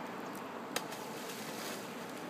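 Steady outdoor background noise, with one brief faint click about three-quarters of a second in.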